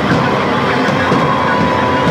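Live band with drums and electric guitars playing a loud, dense droning passage, a steady wash of sound with a high note held from about a second in.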